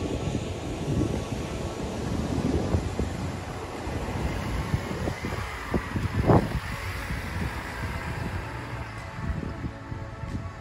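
Wind buffeting the microphone over the engine of a Toyota Fortuner four-wheel drive labouring through soft sand, which grows louder as it passes close by about six seconds in.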